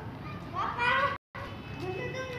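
Children's voices at play, with one child's high call about half a second in. Just after a second in, the sound drops out completely for an instant.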